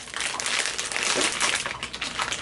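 A crinkly blind-box wrapper bag being handled and pulled open, a dense run of crinkling and crackling throughout.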